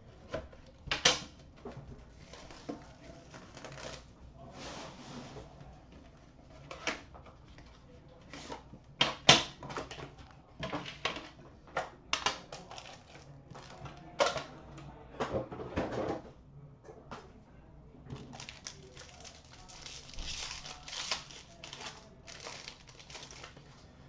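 A sealed trading-card box being opened by hand: a blade slitting the seal, then cardboard and plastic packaging handled, with irregular sharp clicks and rustles. A denser stretch of rustling comes near the end as the cards are taken out.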